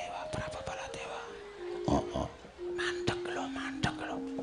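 Soft gamelan metallophone notes, each held briefly and ringing, stepping mostly downward in pitch, with light clicks and knocks scattered among them.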